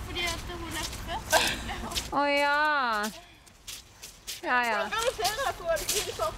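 A person's voice talking and calling out: one long drawn-out call falling in pitch about two seconds in, and a shorter falling call near the five-second mark. Low wind rumble on the microphone in the first two seconds.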